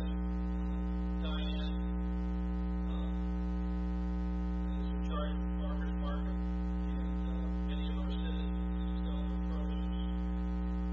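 Loud, steady electrical mains hum with many overtones, a buzz in the sound feed, with faint, indistinct speech underneath.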